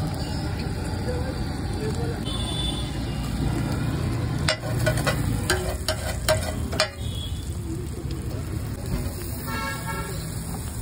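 Eggs sizzling steadily on a large flat iron griddle, with a metal spatula scraping and clacking against the griddle several times in the middle. A vehicle horn toots briefly near the end.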